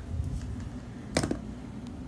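A smartphone being handled in the hand: low rubbing of the handset at first, then one sharp click about a second in and a fainter tick just before the end, over a steady low room hum.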